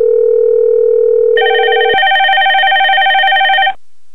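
Ringing tone of a softphone call to extension 102 waiting to be answered: a steady lower tone, joined by a higher one about a second and a half in; the lower drops out at about two seconds and the higher stops shortly before the end.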